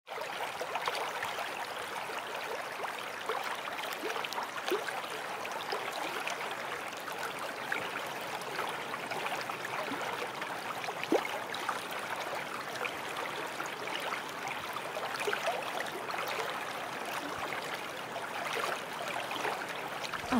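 Steady water sound: a continuous wash with many small drips and splashes through it.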